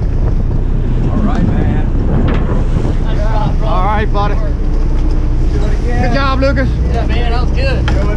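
Steady wind rumble on the microphone over the running noise of an offshore sport-fishing boat at sea, with men's excited calls rising over it about halfway through and again near the end.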